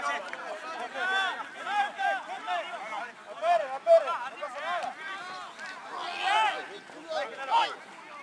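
Rugby players shouting short calls to one another across the pitch during a tackling drill, several voices overlapping in quick bursts.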